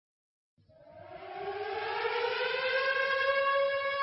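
A siren-like tone opening a sludge-metal track: it fades in about half a second in, glides upward in pitch over the next two seconds, then settles into a steady held note as it grows louder.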